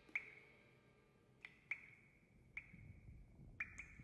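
Faint drips falling one at a time, each a sharp click with a short ringing ping at the same pitch, about six in all with uneven gaps and two close together near the end.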